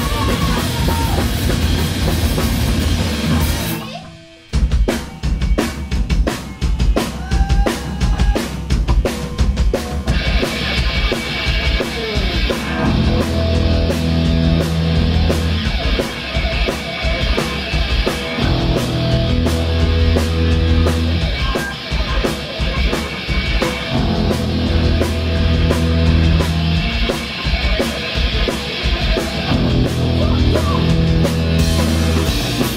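Live hardcore punk band playing loud with drums, electric guitar and bass. About four seconds in the band stops dead, the drums then play alone for several seconds, and the guitars and bass crash back in about ten seconds in.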